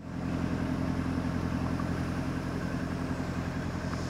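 Boat engine running steadily, heard on board as a low, even hum.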